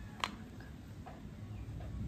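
A single light click about a quarter of a second in as the plastic syringe and its nozzle are handled; otherwise only a faint steady background.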